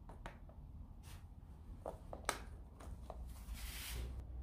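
Faint small clicks and taps of needle-nose pliers and fingers handling a rubber plug on the motorcycle, with one sharper tick a little past two seconds in. A short soft rush of noise comes near the end.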